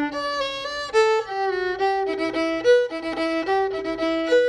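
Solo fiddle bowing a tune's melody, single notes changing every fraction of a second with a few quick short pairs. It is the tune's simplified core melody with one sixteenth-note duplet added back in.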